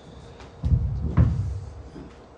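Two low, dull thumps about half a second apart, picked up close on the lectern microphone: knocks or handling noise at the lectern.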